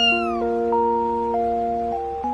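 A kitten's single short, high meow, rising slightly then falling away, over background music of held notes.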